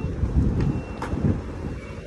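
Low, uneven rumble of wind buffeting a phone microphone, mixed with road traffic passing below.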